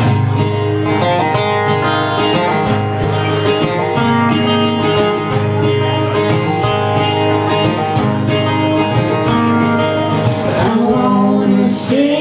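Two acoustic guitars strummed together in a steady rhythm, playing the instrumental opening of a country-folk song.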